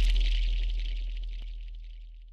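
Fading tail of a title-intro sound effect: a high glittering shimmer over a low bass hum, both dying away steadily.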